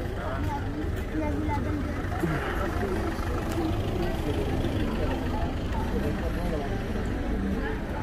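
Busy town street ambience: scattered chatter of passers-by over a steady low rumble of traffic.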